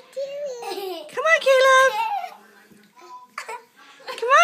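A young child's high-pitched giggling and squealing without words, with one long held squeal about a second in.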